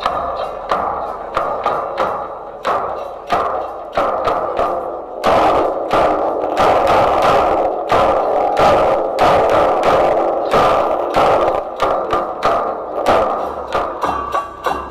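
Sufi 'idda percussion troupe beating drums in a steady processional rhythm, louder and fuller from about five seconds in.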